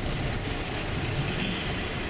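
A tour bus's engine and road noise heard from inside the passenger cabin as the bus drives, a steady low rumble.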